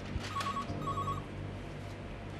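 Telephone ringing with a double ring: two short trilling bursts in quick succession in the first half.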